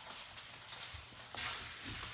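Faint, scattered light ticking and pattering of a Maltese's claws on a laminate wood floor as it walks and turns.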